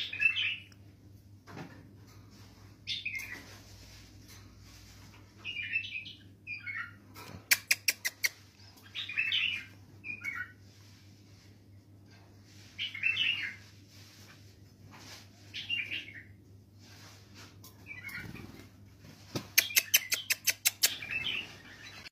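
A pet bulbul giving short chirping calls every two or three seconds. There are two quick runs of sharp clicks, one about midway and one near the end. A low steady hum sits underneath.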